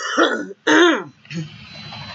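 A woman coughing and clearing her throat: two loud bursts close together in the first second, then a softer one.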